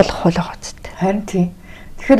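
Speech only: a woman talking quietly in a couple of short phrases with pauses between them.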